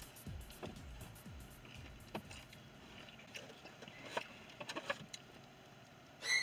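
Faint chewing of a crispy chicken nugget, with a few soft clicks spread through.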